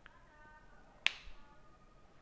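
A single sharp click about a second in, with a brief ringing tail, over a faint background.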